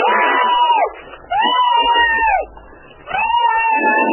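A person screaming in three long, drawn-out cries, each about a second, with short gaps between them.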